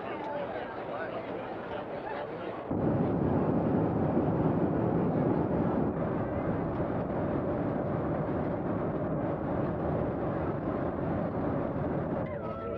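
Steady roar of a jetliner's cabin in flight, with passengers' voices murmuring under it; it turns abruptly louder about three seconds in.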